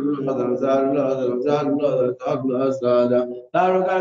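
A voice chanting a melodic Arabic recitation of the Prophet Muhammad's names in long, held phrases, with short breaths about two seconds in and again near the end.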